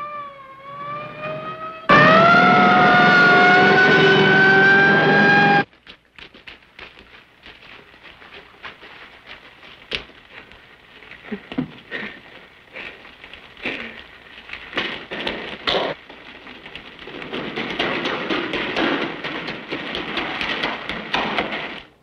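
Police car siren wailing, rising and falling in pitch, loud from about two seconds in and cutting off abruptly a few seconds later. Then quieter scattered knocks and a hiss.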